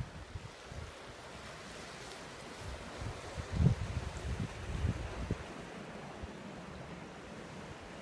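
Wind buffeting the microphone in irregular low gusts, strongest about three and a half seconds in, over a steady rush of ocean surf.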